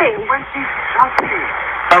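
Recorded 911 emergency phone call with narrow, phone-line sound: voices on the call speaking, then a steady hiss of line and background noise between words.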